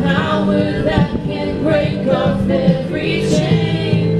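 Three women singing a worship song together into microphones, with steady held instrumental tones underneath.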